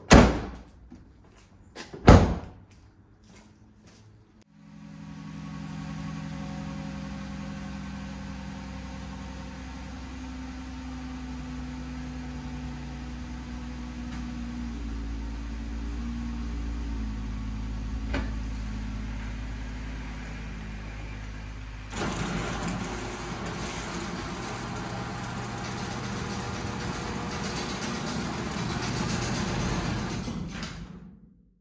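Two slams of a Ram ProMaster van's rear cargo doors, one right at the start and one about two seconds later. Then the van's engine idles steadily, and about two-thirds of the way through the sound turns louder and rougher.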